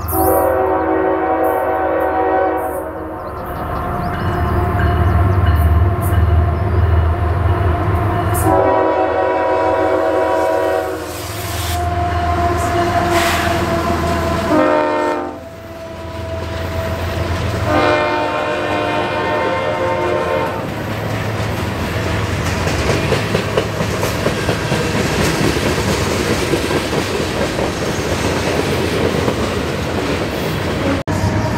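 CSX freight train's diesel locomotive horn sounding long, long, short, long, the grade-crossing signal, over the heavy rumble of the diesel engines. After the last blast the loaded cars roll past with a steady rumble and clicking of wheels over the rail joints.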